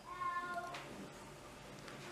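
Young baby making a short, high-pitched whiny vocal sound, under a second long, with a feeding spoon in his mouth.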